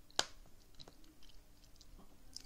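A single sharp click a fraction of a second in, then a few faint ticks.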